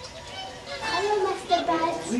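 Whooper swans calling: several overlapping honking calls from the flock, becoming louder about a second in.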